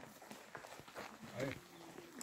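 Indistinct voices of people talking, loudest about halfway through, over a scatter of short clicks and scuffs.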